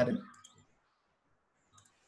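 A man's word trailing off, then near silence broken by one short, faint click near the end.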